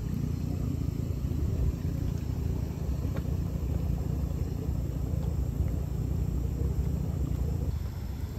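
Boiling grey mud pools at a hot spring bubbling, heard as a steady low rumble with a few faint pops.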